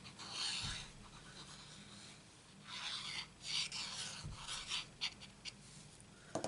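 Faint rasping and rubbing of card stock being handled, in two short spells: one in the first second and another from about two and a half seconds in to nearly five.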